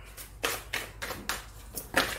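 A deck of tarot cards being shuffled by hand: a string of short, sharp card clicks and slaps, roughly three a second.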